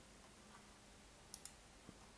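Near-silent room tone with a few faint computer mouse clicks: two close together about one and a half seconds in, then another just before the end.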